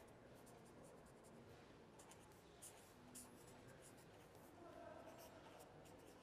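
Faint scratching of a pen writing on paper in short strokes, a little louder for a couple of strokes around three seconds in.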